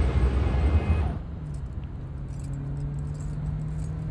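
Busy road traffic noise for about the first second, dropping away abruptly to a quieter steady low hum of a car running, heard from inside the car.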